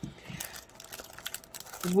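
Clear plastic packaging crinkling as hands grab and lift packs of double-sided tape rolls, an irregular scatter of light rustles and ticks.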